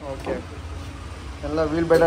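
A man's voice speaking briefly at the start and again from about halfway through, over a steady low hum.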